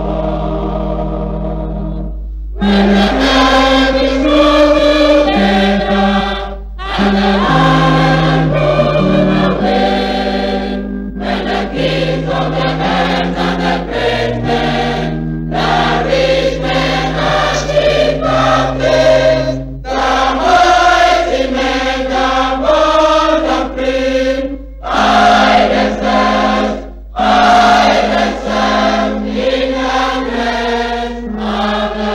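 A choir singing a gospel hymn in phrases of held notes, with short breaks between phrases, over a steady low hum.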